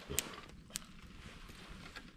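Quiet campfire of burning wood, with two sharp pops from the fire about half a second apart over a faint low hiss.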